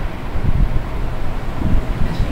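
Loud, uneven low rumble of wind buffeting the microphone.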